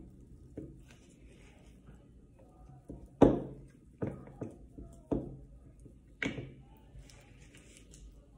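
A spatula packing whipped shea butter down into a glass jar: five dull knocks, the loudest about three seconds in, then four more over the next three seconds.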